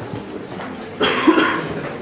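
A person coughs once, briefly, about a second in.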